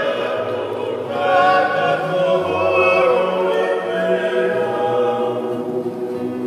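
Group of men singing a Tongan hiva kakala (love song) in harmony to an acoustic guitar, with low voices holding long notes under the melody; a new phrase begins about a second in.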